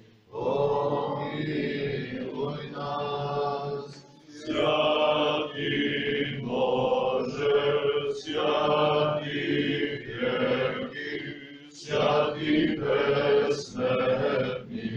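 Orthodox liturgical chant sung by men's voices, in long held phrases with short pauses between them.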